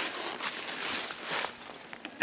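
Soft rustling and crackling of dry leaf litter, as of footsteps, fading near the end.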